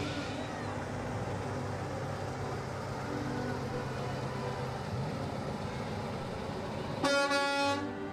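A vehicle engine runs low and steady. Then, near the end, a semi truck's air horn sounds one loud blast of about a second.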